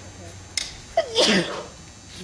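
A person sneezes once, loudly, with a voiced "choo" that falls in pitch, about a second in. A short click comes just before it.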